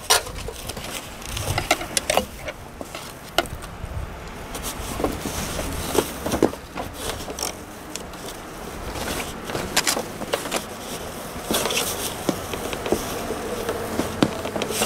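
Irregular small clicks, taps and scrapes of a tool and hands working at brittle plastic windshield washer nozzles clipped into the underside of a car hood, trying to pry them out.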